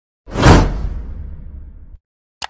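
Whoosh transition sound effect with a deep rumble: it swells in suddenly about a quarter second in, sweeps downward in pitch, and fades over the next second and a half before cutting off short.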